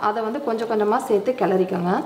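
A woman speaking; only her voice is heard.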